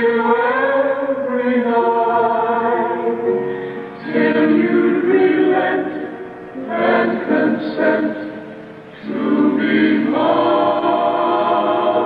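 Ballad music from an old vocal recording: a backing choir holds long chords between the lead singer's lines, dipping briefly in loudness a few times.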